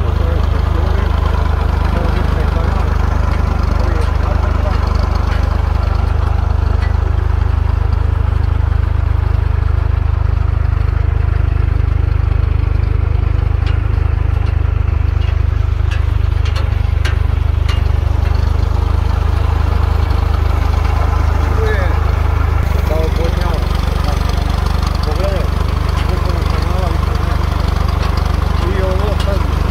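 Small motor vehicle's engine running steadily with a low drone; its sound shifts about three-quarters of the way through.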